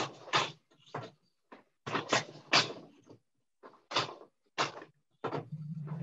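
Four-shaft wooden loom in use: a string of short wooden knocks and clacks, roughly one or two a second, from the beater pushed against the cloth and the shafts with their metal heddles shifting as the weaving goes on.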